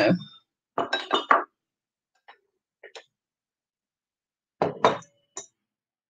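Glazed ceramic teapot and mugs clinking against each other and the tabletop as they are set down, in a quick cluster of clinks about a second in. Dishware clinks again near the end, with a brief ring.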